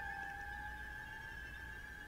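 Faint background music: a sustained eerie drone of two steady high tones, the lower one fading out near the end.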